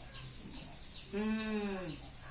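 A single drawn-out, voice-like call about a second in, lasting under a second and dipping in pitch as it ends. Faint, short high chirps repeat about twice a second throughout.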